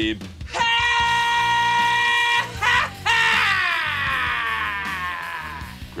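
A high-pitched scream held on one note for about two seconds, then after a short break a second scream that slides down in pitch and fades away.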